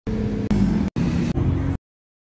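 Lamborghini Aventador's V12 engine running, heard as four short snippets cut hard one after another, stopping abruptly shortly before the end.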